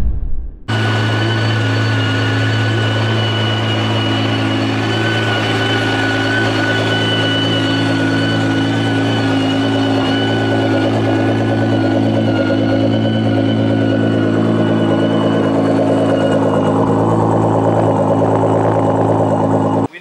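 Switzer-tuned Nissan GT-R's twin-turbo V6 idling steadily, a loud, even exhaust note at constant pitch. It starts just under a second in and cuts off abruptly at the end.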